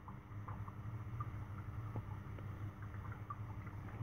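Quiet, steady low hum of background noise with a few faint, light ticks.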